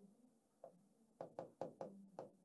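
Faint ticks of a pen writing by hand on a sheet of paper against a hard board: one tick about two-thirds of a second in, then a steady run of about five a second from just past one second.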